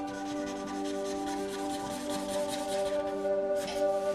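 A felt-tip marker scrubbing back and forth on paper in repeated short strokes as an area is coloured in, over soft background music with long held tones.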